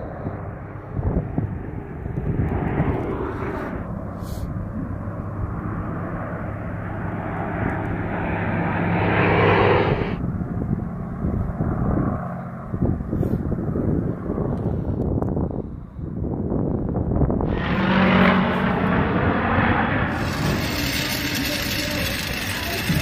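A-10C Thunderbolt II's turbofan engines and a propeller warbird's engine flying over together in formation, with a steady low engine hum under the jet noise. The noise swells to a peak about halfway through and stops abruptly, then swells again near the end.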